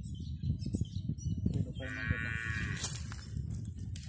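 A single drawn-out animal call, starting about two seconds in and lasting about a second, over a steady low rumble of wind on the microphone.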